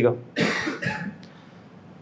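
A man's short cough, about half a second in, with a smaller second cough just after.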